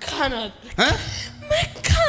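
A woman's voice over a microphone in several short vocal outbursts that slide up and down in pitch.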